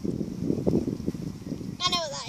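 Low, muffled rumbling noise, then near the end a girl's high, trembling laugh.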